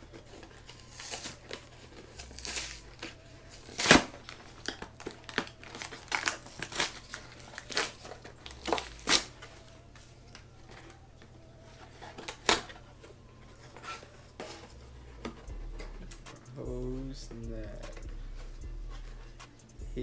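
A cardboard Priority Mail shipping box being opened by hand: tape and cardboard ripping and packing material crinkling in a series of short, sharp rips and rustles, the loudest about four seconds in.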